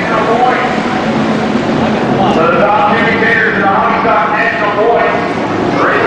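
A pack of hobby stock race cars' V8 engines running hard together on a dirt oval, many engine notes overlapping, their pitch rising and falling as the cars accelerate and lift.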